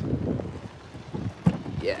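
Wind buffeting a phone microphone with handling rumble, and one sharp knock about one and a half seconds in.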